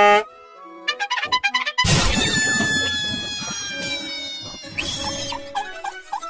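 Cartoon orchestral score with brass. It opens on a short loud pitched note, runs through a quick string of notes, then about two seconds in comes a sudden loud noisy hit with several slowly falling tones over it that fade over the next few seconds.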